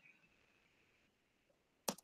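Near silence, broken by one short, sharp click near the end.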